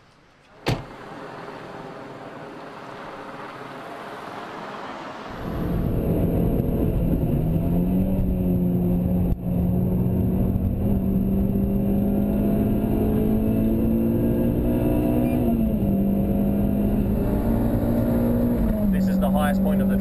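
A sharp thump about a second in, like a car door shutting, then a rising hiss. About five seconds in, the Renault Clio Gordini R.S.'s four-cylinder engine comes in, running hard at speed with a steady high note that steps up and down a few times.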